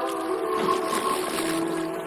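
Background music: soft held synth chords, with a lower note joining about halfway through.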